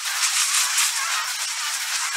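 Intro sound effect: a steady, high fizzing crackle with a shaker-like rattle, like a lit sparkler, with no low end.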